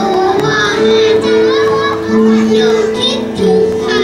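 A young girl singing into a handheld microphone over a backing music track, her voice amplified.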